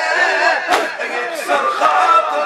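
A crowd of men chanting a Shia mourning lament (latmiya) in unison with the reciter, many voices overlapping. There is one sharp, loud unison strike about three-quarters of a second in.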